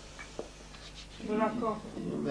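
A few faint soft ticks and rustles, then about a second in a short, drawn-out voiced utterance lasting about half a second.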